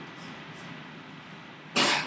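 A person's single short cough near the end, over faint room noise.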